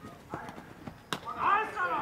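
A single sharp knock about a second in, then loud, high-pitched shouted calls from people at a baseball game.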